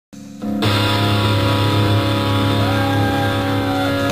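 Live electric guitar holding one sustained chord that starts about half a second in, with a higher note sliding up and back down near the end. No drums yet.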